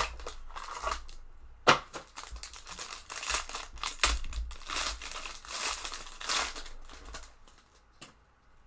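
Foil wrapper of a hockey trading-card pack crinkling and tearing as it is opened by hand and the cards are pulled out, with one sharp click about a second and a half in.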